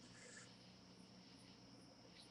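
Near silence: room tone with a faint steady high-pitched hum and a very faint brief sound about a third of a second in.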